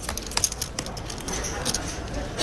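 Scattered light clicks of clay poker chips being riffled in players' hands and playing cards being dealt onto the felt, over a low steady room hum.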